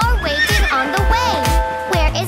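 A horse whinnying once near the start, a quavering call that falls in pitch, over cheerful children's background music with a steady beat.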